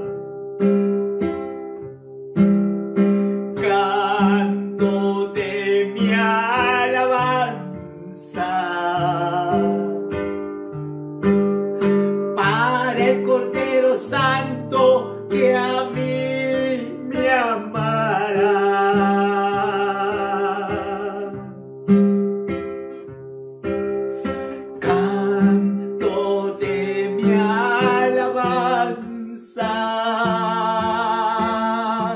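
A man singing a Spanish Pentecostal chorus in phrases with short breaks, accompanying himself on a strummed acoustic guitar.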